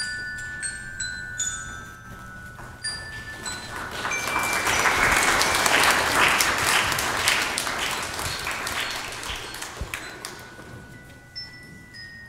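Bell-like struck notes ringing out, then a congregation applauding from about four seconds in for some six seconds, with bell-like notes ringing again near the end.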